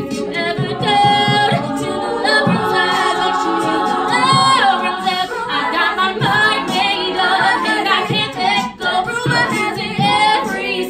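All-female a cappella group singing live: a lead voice on a microphone carries bending high notes over the rest of the group's sung backing.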